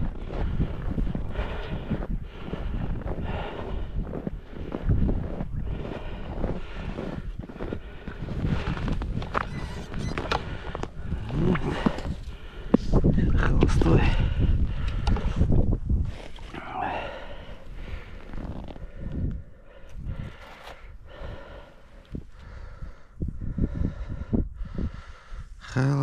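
Strong wind buffeting the microphone with a heavy low rumble, gusting loudest around the middle, while footsteps crunch through snow in the first part.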